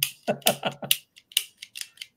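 A run of short, breathy laughs in the first second, then a few light clicks.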